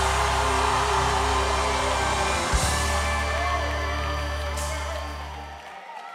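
A live gospel band holding a chord over steady bass notes, with cymbal crashes, the music fading out just before the end.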